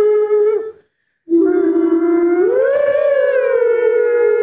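A long howl held on a steady pitch. It breaks off just under a second in, then comes back as a longer note that rises in pitch in the middle and settles slightly lower.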